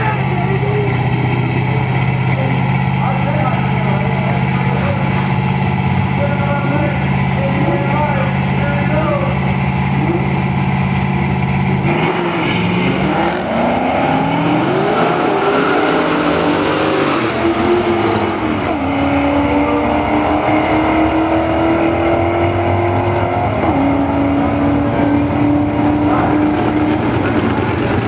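Drag-racing cars, a 1972 Ford Gran Torino among them, holding a steady engine drone at the start line with voices over it. About twelve seconds in they launch: the engine pitch climbs and drops back through several gear changes, then holds a slowly rising note as the cars run down the strip.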